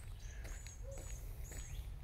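A small bird repeating a short, high, thin chirp about twice a second, over a low outdoor rumble.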